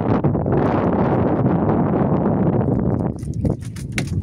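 Close, dense rustling and crackling of a nylon fishing net being handled in a small boat, with scattered small clicks, dropping away about three seconds in.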